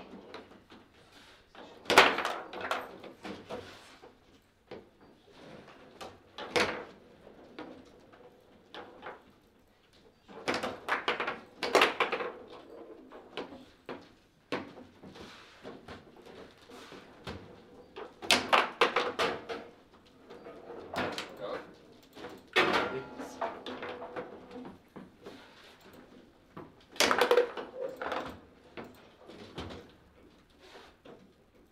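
Foosball being played: the ball and the rod-mounted players knock and clatter against each other and the table walls in scattered bursts of sharp hits with short lulls between, the loudest about two seconds in.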